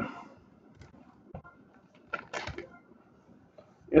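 Faint scattered clicks, then a short crackling rustle about two seconds in.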